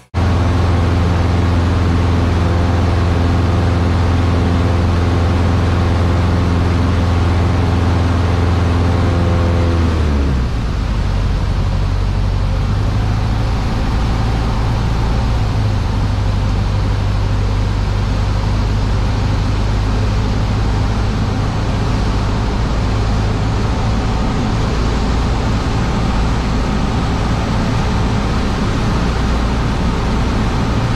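Piston engine and propeller of a single-engine light aircraft droning steadily in flight, heard inside the cockpit. About ten seconds in the engine note drops to a lower pitch as the engine slows, then holds steady.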